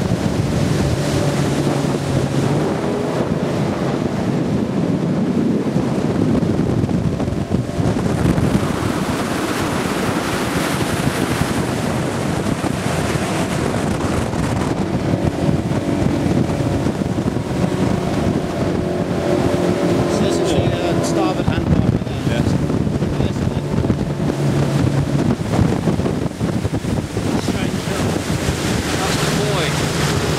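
Rigid inflatable rescue boat underway: its engine running steadily under wind buffeting the microphone and water rushing past the hull, the engine note shifting a few times.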